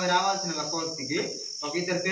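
A person talking, pausing briefly about halfway through, over a steady high-pitched whine that runs unbroken throughout.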